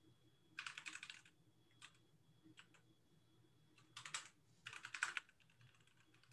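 Computer keyboard being typed on, faint, in three short runs of quick keystrokes with a few single taps and pauses between them.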